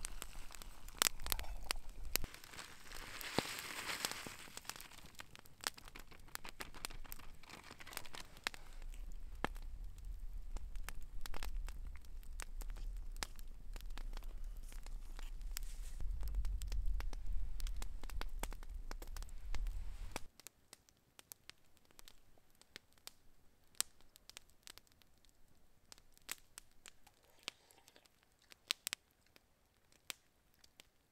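Campfire crackling and popping, with water at a rolling boil in a titanium pot set on the fire. About two-thirds through the sound drops off suddenly, leaving fainter, sparser crackles.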